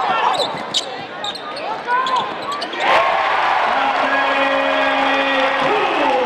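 Basketball game sound in an arena: crowd noise with sneakers squeaking on the hardwood and a ball bouncing. About three seconds in, the sound cuts abruptly to louder crowd noise with steady held tones over it.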